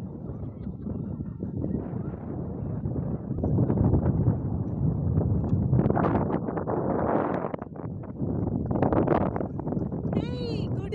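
Wind buffeting the microphone, a low rushing rumble that swells and falls in gusts, loudest a few seconds in and again near the end.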